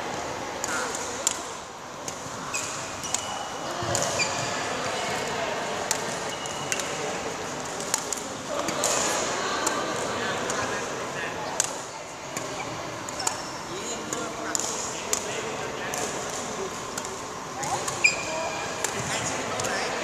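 Badminton play in a large sports hall: irregular sharp racket strikes on a shuttlecock and short squeaks of court shoes on the floor, the loudest strike about 18 seconds in, over indistinct background voices.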